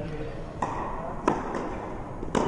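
Tennis balls struck by rackets, two sharp hits about two-thirds of a second apart, echoing in an indoor tennis hall.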